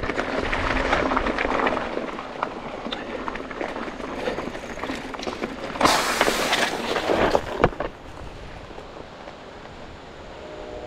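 Mountain bike tyres rolling and rattling over a rocky dirt singletrack. About six seconds in, a tyre is sliced open and air rushes out in a sudden loud hiss lasting under a second, followed by a knock.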